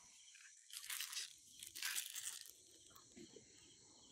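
A document's sheets rustling and crinkling as they are handled and opened, in two short bursts, one about a second in and one around two seconds in.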